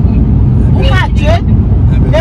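Steady low rumble of a car interior on the road, with a short bit of voice about a second in.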